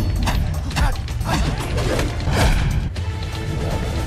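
Soundtrack music with a heavy, steady bass, overlaid with several sudden hits and swishes, fight-scene punch and whoosh sound effects.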